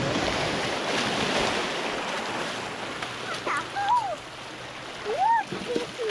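Small waves washing and splashing over shoreline rocks, steadiest in the first few seconds. Two short wordless voice sounds, rising then falling in pitch, come in the second half.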